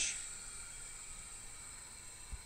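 Quiet, steady hiss of recording background noise with a faint high steady whine. The end of a spoken word is heard at the very start.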